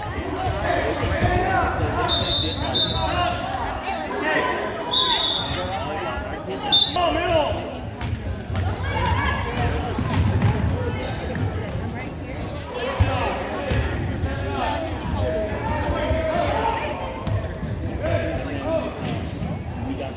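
Basketball being dribbled on a hardwood gym floor during play, the bounces ringing in a large hall, over constant voices from players and spectators.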